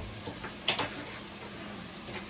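A few short, sharp clicks and light knocks from handling things in the kitchen, the loudest about 0.7 s in, over the steady low hiss of a pot cooking on the stove.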